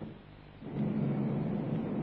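A loud, steady mechanical rumble with a low hum, engine-like, cuts in suddenly about two-thirds of a second in, after a quiet moment.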